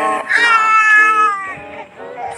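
A baby crying: one long, high-pitched wail that sinks slightly in pitch and dies away about a second and a half in.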